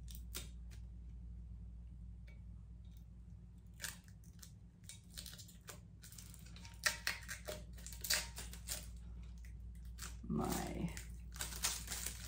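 Shrink-wrap plastic and sublimation paper being peeled off a stainless steel jar: faint crinkling and tearing, with a cluster of louder crackles from about seven to nine seconds in.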